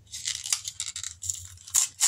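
Crinkly plastic packaging of a lip balm rustling and crackling as it is handled and opened, with a sharp click near the end.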